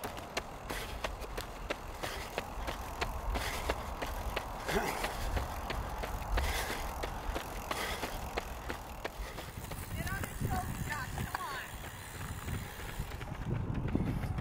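Running shoes striking asphalt in a quick, steady rhythm of footfalls over a low rumble of wind and road noise.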